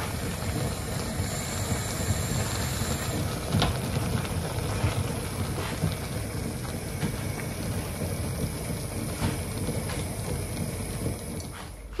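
Corned beef and cabbage stew simmering in a frying pan: a steady sizzle with an occasional small pop.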